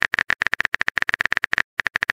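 Rapid phone-keyboard typing clicks, a sound effect for text being typed into a chat box: about a dozen short, sharp clicks a second, with a brief pause near the end.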